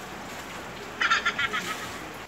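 A short, high-pitched bird call, rapidly pulsing and about a second long, starting about a second in, over faint outdoor background hiss.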